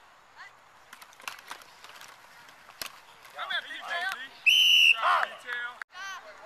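Scattered sharp knocks as a youth football play is run, with shouting voices, then one short, loud whistle blast about four and a half seconds in that blows the play dead.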